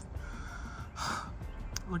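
A person's single short, sharp breath in, about halfway through, over a low background rumble.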